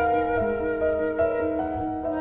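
Concert flute and piano playing classical chamber music together, with notes held and changing about every half second.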